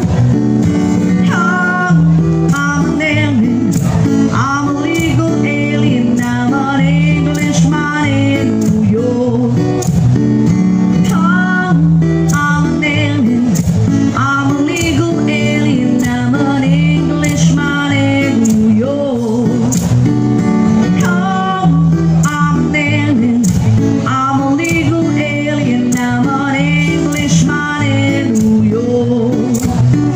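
An acoustic guitar strummed steadily to accompany a singer performing a pop song.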